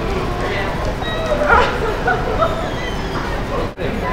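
Street voices, with a dog yipping and whimpering in short high calls.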